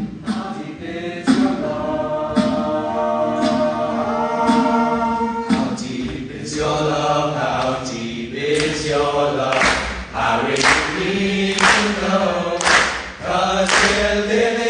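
All-male a cappella group singing, a lead voice over held backing harmonies. From about eight seconds in, a sharp hit lands roughly once a second as a beat.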